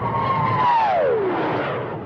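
A whoosh sound effect for the closing logo: a swelling rush with a tone that slides steadily downward in pitch, like a passing jet, then starts to fade.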